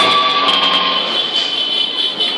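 Loud hiss and noise from distorted electric guitar amplifiers with steady ringing feedback tones, slowly fading as the song ends.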